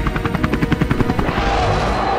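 Helicopter rotor chop: a rapid, even beat of blade slaps that fades out after about a second, over background music.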